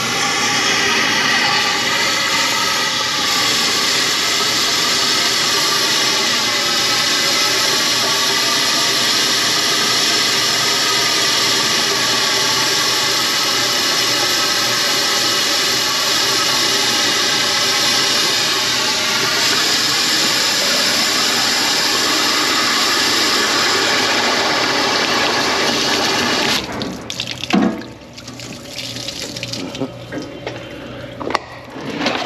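Water spraying hard and steadily from a hose's trigger spray gun, with a pump running behind it, at a grease-clogged drain line. It cuts off suddenly about 26 seconds in, followed by a few knocks and a thump.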